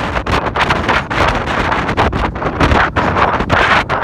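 Wind buffeting a handheld phone's microphone: a loud, rough rushing noise that swells and dips rapidly.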